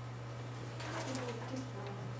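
Quiet, low-voiced talk in a small room over a steady low electrical hum.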